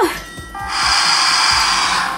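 Barbie Breathe with Me meditation doll playing through its small chest speaker: soft sustained music tones, joined under a second in by a steady breathy whoosh that holds.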